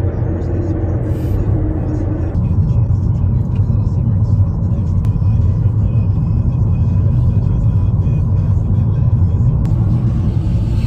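Steady low rumble of a moving car, heard from inside the cabin, with its sound shifting a couple of seconds in.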